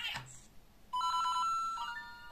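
Electronic jingle from a LEGO Super Mario interactive figure's built-in speaker: a brief voice-like sound at the start, then from about halfway a few quick beeps, a held note and a short rising run of notes.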